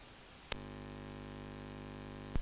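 A sharp click about half a second in, followed by a steady low hum of several fixed tones.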